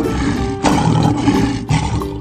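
Lion roar sound effect, loud, swelling again about half a second in, over cheerful children's background music.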